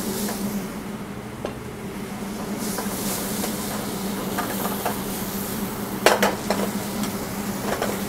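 White beans, diced vegetables and prawns sizzling and bubbling in olive oil in a stainless sauté pan, over a steady low hum. A short clatter comes about six seconds in.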